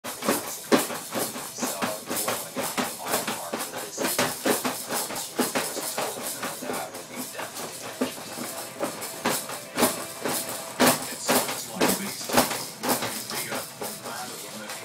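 Zebra ride-on bouncing toy being bounced hard by a toddler: a quick, uneven run of knocks and rattles from its spring and base, a few much louder than the rest, with music playing underneath.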